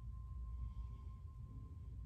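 Quiet room tone: a steady low hum with a faint, thin high-pitched whine running through it.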